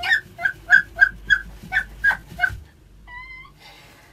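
A woman's high-pitched, squealing giggles as her foot is tickled: about eight short yelps at roughly three a second, breaking off about two and a half seconds in, then one brief wavering cry.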